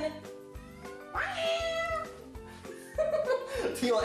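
A long, drawn-out meow about a second in, over background music with a steady beat; another cry-like sound follows near the end.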